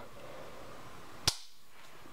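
A single sharp click about a second and a quarter in, from a 1911-pattern pistol being handled; otherwise quiet room tone.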